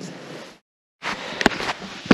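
A steady hiss of outdoor background noise breaks off into about half a second of dead silence at a cut between two recordings. It comes back with two or three sharp clicks or knocks in quick succession.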